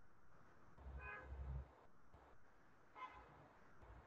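Near silence: room tone, with two faint, brief tones, one about a second in and another near three seconds in.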